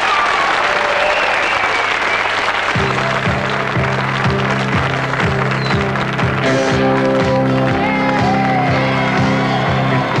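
Studio audience applauding, with a live band starting up a steady beat with a bass line under the applause about three seconds in.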